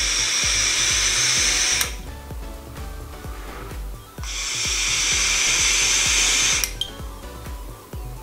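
Two long draws on a Fumytech EZipe vape, each a steady high hiss of air pulled through the firing coil and airflow, lasting about two and a half seconds, with a pause between them. A low background of music runs underneath.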